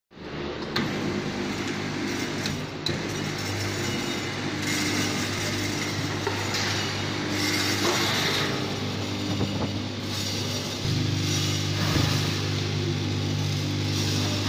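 A 24-channel tablet counting and sachet packing machine running with a steady mechanical hum. A stronger, deeper hum joins about eleven seconds in, and there are a couple of light clicks in the first few seconds.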